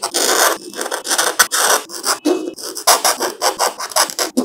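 A metal knife blade scraping and scratching across the plastic back panel of an iQOO Neo 6 smartphone in a run of short, repeated strokes, carving marks into it. That it scratches this way shows the back is plastic, not glass.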